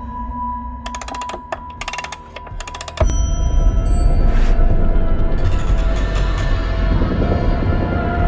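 Soundtrack music: a held tone with a fast ticking pattern, then about three seconds in a loud, deep sustained section comes in and holds.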